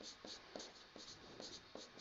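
Faint strokes of a marker pen writing on a whiteboard: a quick series of short, soft strokes as letters are formed.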